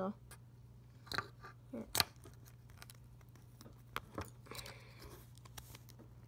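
Handling noise from a small blown loudspeaker turned in the fingers: a few sharp clicks and taps, the sharpest about two seconds in, with a light scratching near the end.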